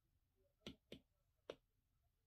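Apple Pencil tip tapping on an iPad's glass screen: three light clicks, the first two close together and the third about half a second later.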